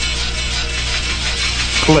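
Horror film trailer soundtrack: music with a steady hiss and a constant low hum underneath, and a man's voice starting right at the end.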